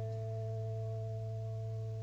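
ELKA electronic organ holding a chord: a few steady, pure tones sustaining without change over a low steady hum.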